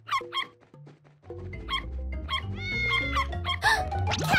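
Cartoon background music with a puppy making a few short, quick vocal sounds in the first second, then the music fills out with gliding tones.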